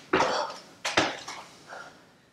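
Bare feet and hands landing on yoga mats over a wooden floor during burpees: a hard breath at the start, then a sharp thud about a second in.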